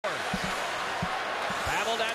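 Ice hockey arena ambience: a steady wash of crowd and rink noise, with several low, dull thumps.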